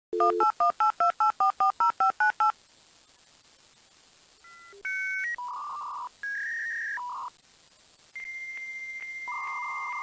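Touch-tone telephone dialing: about ten quick two-tone beeps in a fast run. After a short pause, a series of steady electronic tones at shifting pitches follows, ending in a long high tone broken by regular clicks.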